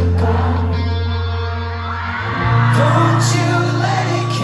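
A live pop-rock band playing loudly through a hall PA, recorded from within the crowd, with held bass notes that shift to a new note about halfway and a cymbal crash around three seconds in. Voices from the crowd singing along and shouting over the music.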